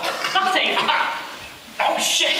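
A person's voice, fading to a brief lull and then breaking in again suddenly and louder just before the end.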